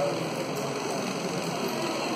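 Steady background hum of the room, with faint rustling and handling of paper notes as they are leafed through.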